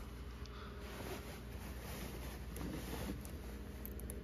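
A faint steady electrical hum from a running iMac G3 CRT computer, with a few faint clicks.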